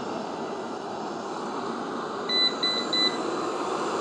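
Eufy RoboVac 25C robot vacuum running steadily on carpet. A little past two seconds in, it gives three short electronic beeps, its signal that the fan has been switched to maximum boost suction.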